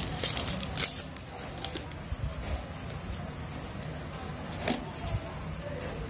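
Hands handling a smartphone's plastic parts and battery: a few rustling, scraping strokes in the first second, then quieter handling with a couple of small sharp clicks.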